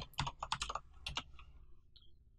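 Computer keyboard typing: a quick run of about ten keystrokes that stops just over a second in.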